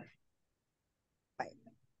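Near silence, broken about one and a half seconds in by one brief, faint vocal sound from a person.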